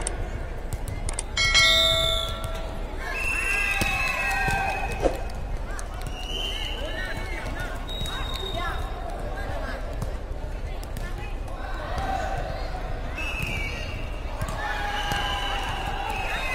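An air-volleyball rally on an indoor court: players' voices calling out, and the light slaps of hands striking the soft, light air-volleyball, scattered through the rally.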